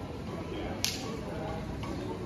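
Outdoor ambience of a busy pedestrian street, a steady low hum of the surroundings, with one sharp, short click a little under a second in.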